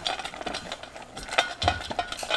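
A dog eating from a stainless steel bowl: irregular metallic clinks and knocks as its muzzle and collar strike the metal bowl.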